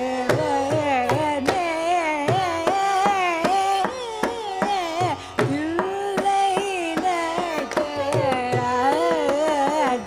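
A woman sings a Carnatic classical melody, sliding and shaking between notes, over a steady drone. Regular hand-drum strokes accompany her.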